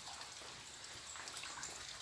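Faint, steady hiss of light drizzle (garoa) falling on wet vegetation.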